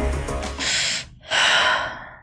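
Film score music that stops about half a second in, followed by two audible breaths from a person, a short one and then a longer one.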